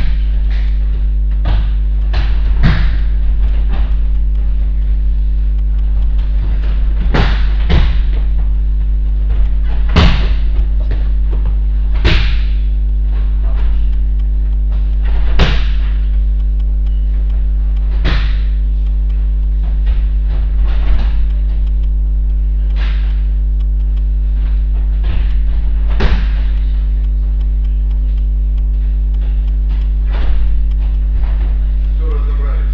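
Loud, steady low electrical hum with a buzz of evenly spaced overtones, broken every second or few by irregular thuds and knocks from people moving about on gym mats.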